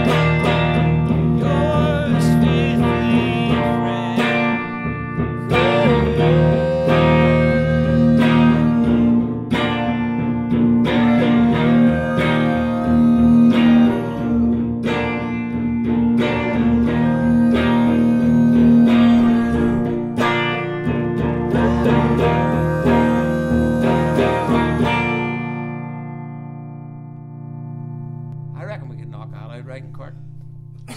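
A guitar strummed in a steady rhythm, with a melody line over the chords. About 25 seconds in, the playing stops on a final chord that rings out and fades.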